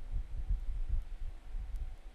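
Low, bass-heavy pulses repeating a few times a second over a faint hum: a background music track playing back with its volume turned well down.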